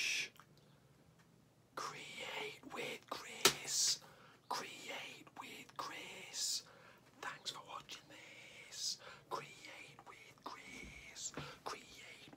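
A man whispering excitedly in short, breathy phrases. There is one sharp click about three and a half seconds in.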